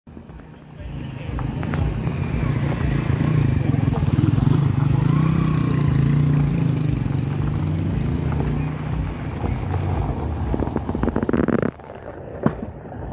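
Vehicle engines running close by on a gravel road, swelling from about a second in, loudest through the middle and easing toward the end, with a run of rapid crackling just before the sound drops off suddenly.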